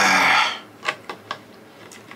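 A man's loud, breathy burp, lasting about half a second. After it, four light clicks and knocks as he handles a glass and a bottle on a wooden table.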